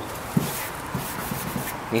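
Steady background noise with a brief low vocal sound from a man about half a second in and a few faint ticks.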